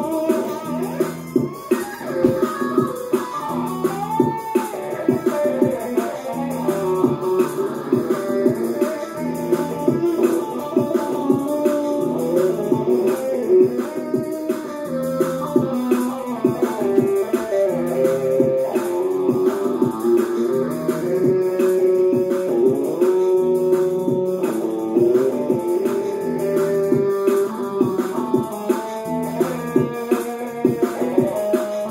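Electric guitar played along with a recorded song coming through speakers: continuous rock-style music with a steady beat and a repeating bass line under the guitar.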